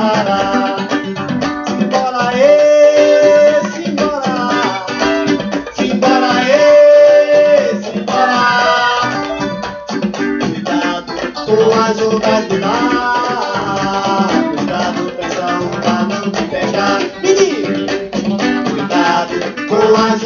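Music from a vinyl record playing on a turntable through a hi-fi speaker: an instrumental stretch of a Brazilian song between sung verses, with plucked strings and long held notes.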